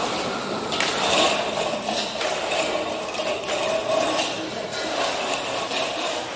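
Construction-site work noise echoing in a large hall: a steady din with scraping, and patches of hiss that start and stop abruptly.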